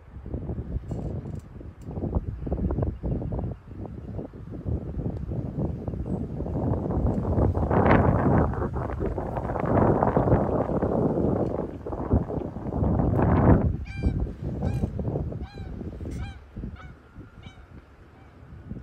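A loud rushing noise swells through the middle. Near the end a goose honks repeatedly, about two short calls a second for a few seconds.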